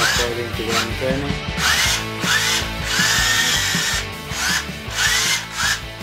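Small DC gear motors of a tracked robot chassis whirring in short spurts as it drives and turns, each spurt rising in pitch as the motors spin up, with a longer run about three seconds in. Music plays underneath.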